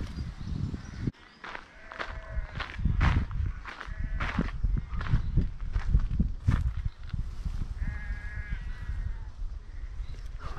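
Footsteps and rustling through grass over a low rumble, with three drawn-out animal calls in the distance, about two, four and eight seconds in, the last the longest.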